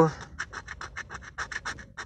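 A coin scraping the latex coating off a scratch-off lottery ticket in quick short strokes, about seven a second.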